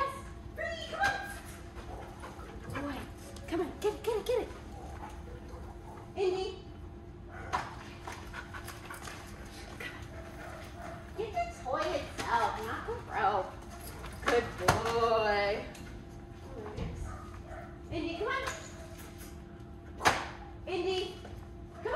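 A doodle dog whining and whimpering in short bursts during excited tug play, with one longer wavering whine about three-quarters of the way through.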